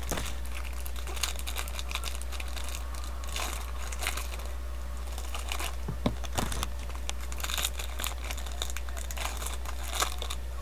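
Foil baseball-card pack wrapper crinkling and tearing as it is opened by hand, with cards handled and a few sharp clicks about six seconds in, over a steady low hum.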